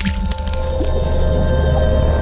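Logo-animation sound effect: a sudden splashy hit as the ink blot bursts open, then a held musical chord over a low drone.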